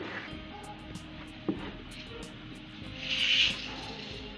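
Faint background music over a hand mixing wheat flour into thick bonda batter in a steel bowl, with a short rustling hiss about three seconds in.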